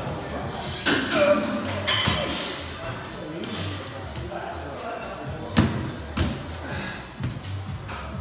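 A 100 kg barbell power clean makes a loud burst of sound about a second in. A sharp thud about five and a half seconds in, and a smaller one just after, come as the bar is jerked overhead and the feet land. Background music with a steady beat plays throughout.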